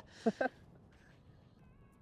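A man's short breath and a brief murmur in the first half second, then quiet outdoor air with a few faint high tones late on.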